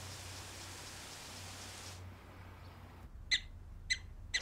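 Faint steady hiss of outdoor ambience that drops away about two seconds in. Near the end come two short, high squeaks from small animals, about half a second apart.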